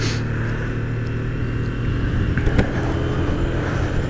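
Honda CB300 motorcycle's single-cylinder engine running steadily at low road speed, an even low hum.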